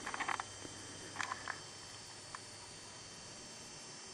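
Faint rustling and crinkling of a jacket being handled, in a few short bursts during the first second and a half and one small tick a little later, over a steady faint room hiss.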